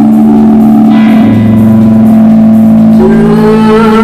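Electronic synthesizer drone of long held tones. A lower tone joins about a second in, and a higher tone with a slight upward rise comes in about three seconds in.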